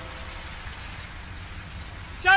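Steady, even rushing hiss like rain, with a low rumble underneath: a film soundtrack's ambience bed.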